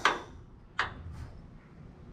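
A single short metallic click a little under a second in: a clip-in racing harness snap hook snapping onto a welded eye-bolt belt anchor.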